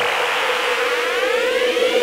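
Electronic music build-up: a synthesized riser with a steady held tone under several sweeps that climb steadily in pitch over a hiss.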